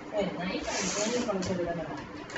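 Indistinct voices talking in a room, with a short hiss a little over half a second in.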